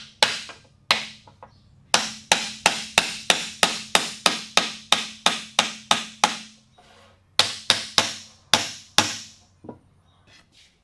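Small hammer striking a wooden block held against a wooden display-case frame. A few separate blows, then a steady run of strikes about three a second, a brief pause about seven seconds in, another quick run, and one last strike near the end.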